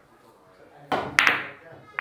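Pool balls clacking together after a cue shot: two sharp clicks close together just over a second in and another near the end, with a short burst of voice around them.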